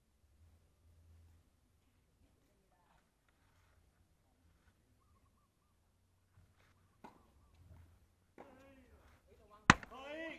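Mostly quiet court ambience; near the end a man's voice talks briefly, then a single sharp, loud knock close to the microphone.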